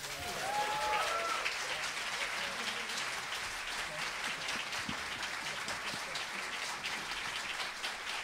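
Concert audience applauding steadily, with a few voices cheering in the first second or so.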